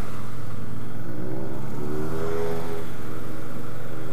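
Triumph Bobber's 1200cc liquid-cooled parallel-twin engine running steadily while filtering at speed. Another motorcycle passes close by, its engine note rising and then falling about halfway through.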